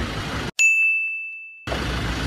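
A single bright, bell-like ding about half a second in, ringing out and fading over about a second. The street noise drops out completely around it, as an edited-in chime sound effect does.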